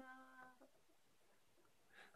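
Near silence: room tone, with the faint tail of a held spoken vowel fading out in the first half second.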